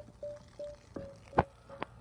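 A faint short tone repeating evenly, about three times a second, with a single sharp click a little past the middle.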